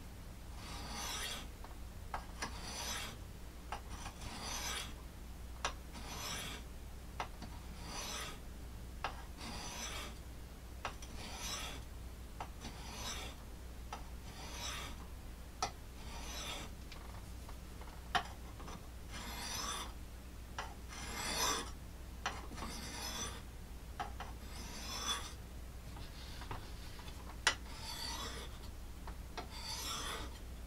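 A steel knife blade being stroked across an oiled sharpening stone on a Smith's Tri-Hone bench sharpener: short gritty scrapes, about one a second, with a few sharp clicks between them. This is the stone before the fine one, lubricated so the metal shavings don't clog its pores.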